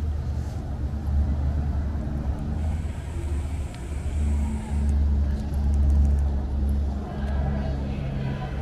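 A loud low rumble that swells and fades, strongest about five to six and a half seconds in.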